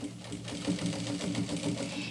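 Heavy straight-stitch sewing machine running at a steady, slow speed, with a low hum and rapid needle ticking, as it topstitches a double-turned denim jeans hem.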